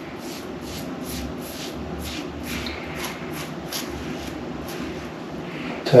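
Rex Ambassador adjustable safety razor, set at three, scraping through lathered stubble on the cheek in short quick strokes, about three a second: the first pass, with the grain.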